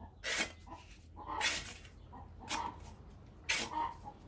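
Abrasive sanding pad rubbed along a steel scythe blade to sharpen it: four short rasping strokes, about one a second.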